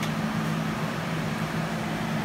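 A steady low mechanical hum over an even background hiss, unchanging throughout.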